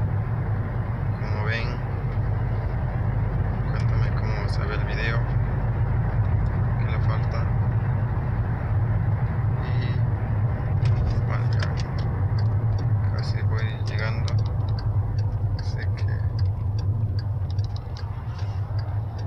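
Steady drone of a car heard from inside the cabin while driving, engine and road noise with a strong low hum.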